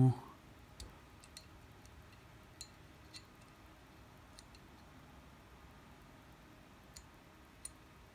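Faint, irregular small clicks of the firing pin parts being worked at the rear of an Archon Type B pistol slide as they are lined up to drop in together. They will not seat yet because the firing pin sits a little crooked.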